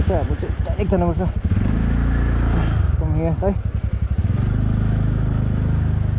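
TVS Ntorq 125 scooter's single-cylinder four-stroke engine running and pulling away, the throttle opened about a second and a half in and the engine note steady from about four seconds in. Short bits of speech come near the start and about three seconds in.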